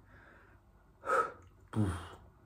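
A man blowing out two short, forceful breaths, about a second in and again near the end, with a little voice in them, as he rests winded between sets of push-ups.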